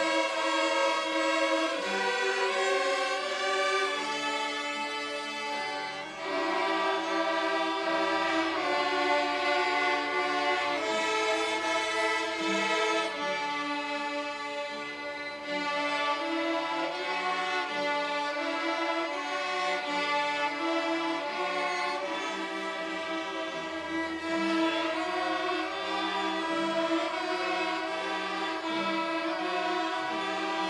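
Student string ensemble of many violins and one cello playing a French folk song in two-part harmony, with sustained bowed notes and brief breaks between phrases about six and fifteen seconds in.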